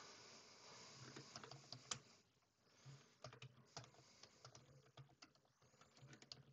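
Faint typing on a computer keyboard: a run of light, irregular key clicks as a short name is typed.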